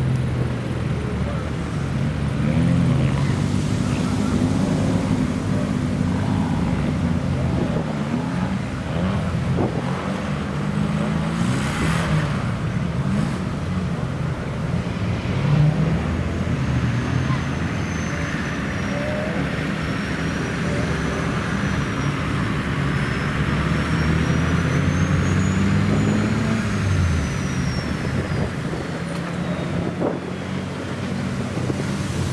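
Off-road 4x4 engines running and revving, their pitch rising and falling as the vehicles drive across and climb a grassy slope.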